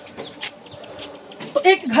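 Chalk on a blackboard, a run of short, faint scratching and tapping strokes. Near the end a man's voice starts, louder than the chalk.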